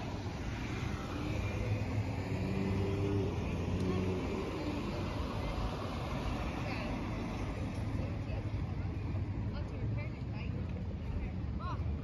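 Street traffic: cars driving past on a village road, a passing engine swelling and fading over the first few seconds, with voices in the background.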